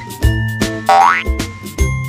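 Light, upbeat children's background music with held notes and a few drum beats. About a second in, a quick rising pitch glide plays over it, a cartoon 'boing'-style sound effect.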